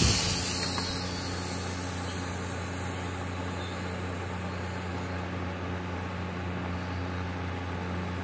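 Heliquad Bladerunner micro quadcopter's high motor whine fading quickly as it flies off, leaving a steady low hum.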